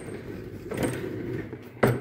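Handling noise: rubbing and rustling against the plastic body of a ride-on toy car as it is being filmed, with a sharp click near the end.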